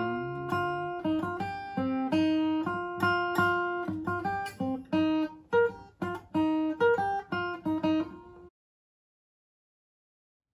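Capoed steel-string acoustic guitar playing a slow picked single-note melody, one note after another. It stops abruptly about eight and a half seconds in, followed by dead silence.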